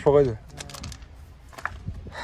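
A brief spoken word, then a quick run of light clicks, with a couple more near the end.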